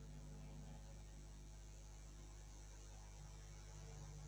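Near silence: a faint, steady electrical mains hum with its overtones and a light hiss, unchanging throughout.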